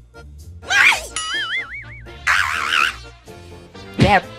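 Cartoon-style sound effects over quiet background music: a quick sliding tone about a second in, then a wobbling 'boing' spring sound, then a short warbling squeak near the three-second mark.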